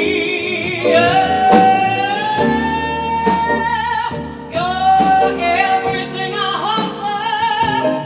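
Female singer holding two long notes with vibrato into a microphone, the first gliding slowly up in pitch, over sustained instrumental accompaniment.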